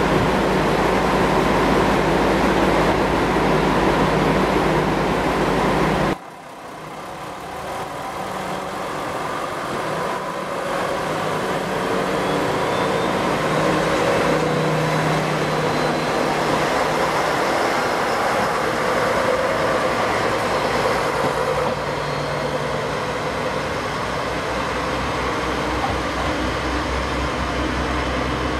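A diesel railcar engine runs loud and steady close by. Then the sound cuts off suddenly, and a red JR Kyushu KiHa 140 diesel railcar approaches, its engine and running noise growing steadily louder before levelling off as it draws near.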